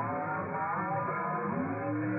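Amateur-radio voice transmission received on a Malachite DSP SDR receiver and played through its speaker: narrow, band-limited radio speech whose pitch shifts and bends, hard to make out as words.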